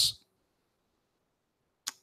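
A man's word trailing off, then near silence, broken by one short, sharp click just before he starts speaking again.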